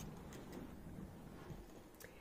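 Very quiet background ambience: a faint low rumble and hiss with no distinct sound event.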